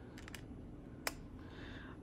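Faint small metallic clicks of a flathead screwdriver turning a screw that holds a planner's metal ring mechanism: a few light ticks near the start and one sharper click about a second in.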